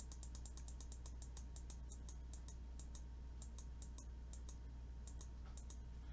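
Faint computer mouse clicks in quick runs, several a second, stepping frame by frame through an image loop, over a steady low electrical hum.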